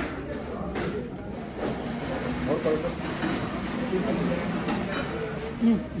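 Indistinct chatter of several diners in a restaurant dining room, a steady murmur of voices with no single clear speaker.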